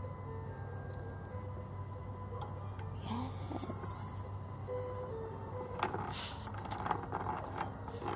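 A simple electronic melody of pure beeping notes, like a musical Christmas yard decoration, plays over a steady low hum. Bursts of rustling noise come about three seconds in and again from about six seconds.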